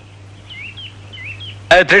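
A handful of faint, short bird chirps over a low steady hum.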